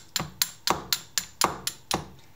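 Traditional flint-and-steel fire kit: a fire steel struck repeatedly down the edge of a flint to throw sparks. It is a quick run of about eight sharp, ringing strikes, roughly four a second.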